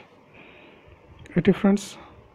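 Speech only: after a quiet pause with faint hiss, a voice says a short word about one and a half seconds in.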